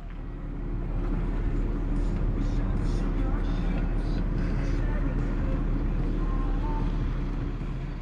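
Car engine running with a steady deep rumble, fading in over the first second and out near the end.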